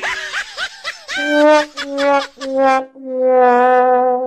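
'Sad trombone' comedy sound effect: four descending brass notes, wah-wah-wah-waah, the last one held long with a wobble, the stock signal of a failure or letdown. Before it come a few short, quick rising cartoon-style squeaks.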